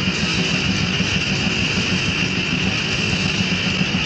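Lo-fi demo-tape recording of extreme metal: a dense wall of distorted electric guitar with a steady high ringing tone held above it.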